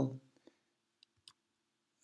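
The end of a spoken word, then near silence with a few faint, sharp clicks over a faint steady hum.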